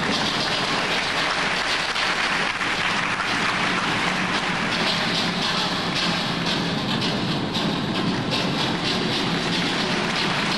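Audience applauding steadily: a dense, even patter of many hands that holds at one level throughout.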